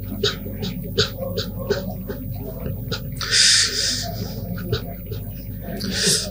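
A man's voice in melodic Quran recitation (tilawat), drawing out a long chanted phrase. A loud hiss cuts in about three and a half seconds in.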